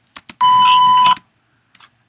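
A TV-style censor bleep: a single steady high tone lasting about three-quarters of a second, cutting off sharply. A few faint clicks come just before and after it.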